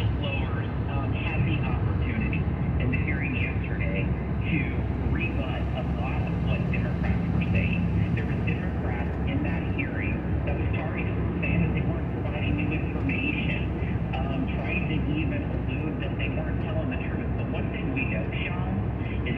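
Steady road noise inside a car's cabin at highway speed on wet pavement, a constant low rumble with tyre hiss, with indistinct talk from the car radio running underneath.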